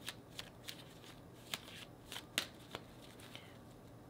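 A deck of tarot cards being shuffled by hand: an irregular run of soft, sharp clicks and flicks as the cards slip against each other, about ten over the few seconds.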